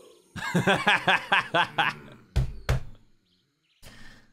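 A man laughing in a quick run of bursts, several a second, followed by two short sharp sounds and a brief lull.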